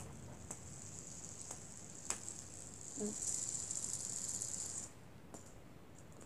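Fidget spinner spinning on its bearing: a high, rattling whir that starts about half a second in and stops abruptly near the end, with a few light clicks of fingers touching it.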